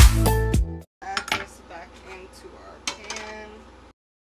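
Upbeat dance music that stops under a second in. After it come a few quieter clinks and taps of a steel knife and fork on a wooden cutting board as cooked chicken breast is cut into pieces.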